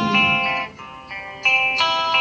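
Guitar playing a short fill of plucked, ringing notes between sung lines. It softens in the middle and picks up again with new notes in the second half.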